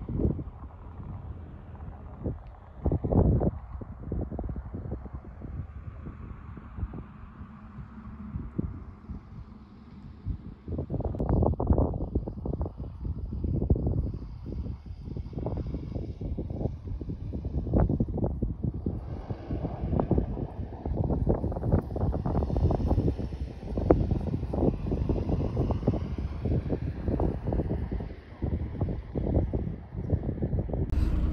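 Wind buffeting the microphone in uneven gusts. It is lighter for the first ten seconds or so and gusts harder and more often in the second half.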